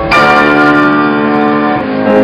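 Piano accompaniment for a ballet class: a chord struck just after the start and left ringing, with the next chord coming in near the end.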